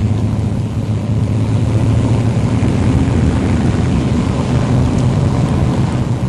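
Car engines in a convoy of street machines driving past close by: a loud, steady low drone.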